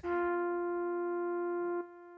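Casio SA-76 mini keyboard sounding one held note, a steady electronic tone with a clear stack of overtones. About a second and three-quarters in it drops sharply in level but keeps sounding faintly.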